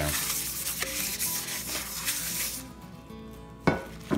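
Coffee filter being rubbed round the oiled inside of a cast iron skillet, a papery scrubbing hiss, spreading a light coat of oil before seasoning. The rubbing stops about two and a half seconds in, and a short knock follows near the end.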